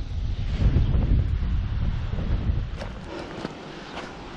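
Wind buffeting the camera microphone: a low rumbling noise that eases off after about two and a half seconds.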